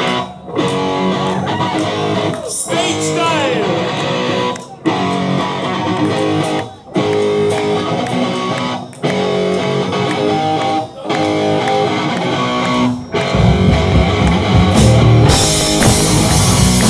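Live punk rock band starting a song: an electric guitar plays a riff alone in phrases of about two seconds with short breaks between them, then the drums and bass come in about 13 seconds in.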